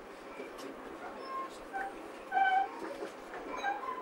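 Steady running noise of a train heard from inside a passenger carriage, with several short, high squeaks over it, the loudest a little past halfway.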